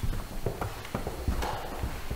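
Footsteps of several people in boots and shoes walking across a wooden floor: a run of short, uneven knocks.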